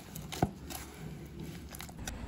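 Faint mashing of soft banana and mango pieces with jaggery under a plastic masher in a steel vessel, with one sharp knock about half a second in.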